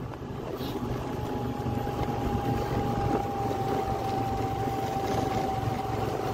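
Motor scooter riding along a road: steady engine and road rumble, with a thin steady whine that sets in about a second in and sinks slightly in pitch.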